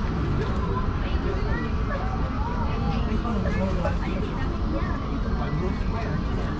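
Indistinct voices of people talking, over a steady low rumble.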